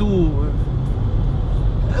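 Steady low road and engine rumble inside a moving car's cabin, with a man's voice trailing off at the start and starting again at the very end.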